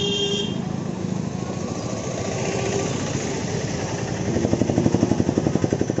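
Road traffic: a brief high-pitched vehicle horn at the start, then a motorcycle engine passes close by, its rapid pulsing running loudest a second or so before the end.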